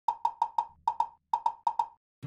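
A quick rhythm of hollow wood-block clicks, about ten in two seconds in short runs of two to four, opening a music intro sting.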